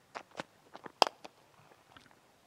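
Cricket bat hitting the ball: one sharp crack about a second in, after a few fainter ticks, as the ball is struck away for four.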